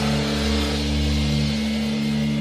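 Rock music: a held, sustained chord with steady bass tones, just after a sung line has ended.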